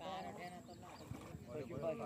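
Several men's voices talking over one another, unintelligible chatter from a group of bystanders.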